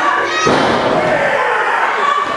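A wrestler slammed onto the wrestling ring mat: one loud impact about half a second in, with voices shouting around it.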